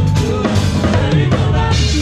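A drum kit played to the fore in a quick run of hits, bass drum and snare prominent, over the bass and the rest of a live band.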